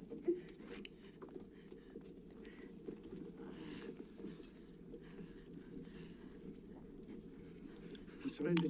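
Muffled, heavily filtered TV-drama soundtrack: a run of irregular knocks and scuffles with faint voices underneath.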